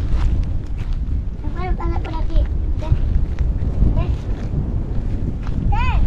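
Wind rumbling on the microphone, with a few short, high-pitched calls of distant voices, the loudest near the end.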